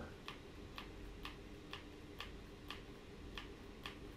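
Repeated light clicks, about two a second, from a VR motion controller's button as the avatar-scale up arrow is pressed again and again, each press raising the scale a step.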